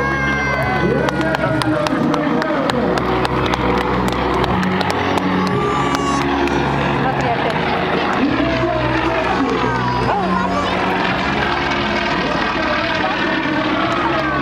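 Crowd voices and loudspeaker music with a steady, stepping bass line, with the Yak-52's nine-cylinder radial propeller engine running through the mix.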